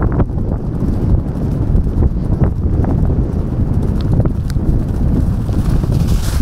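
Racehorses galloping on grass turf, their hoofbeats a rapid, continuous drumming heard from the saddle of one of them, under a heavy low wind rumble on the microphone.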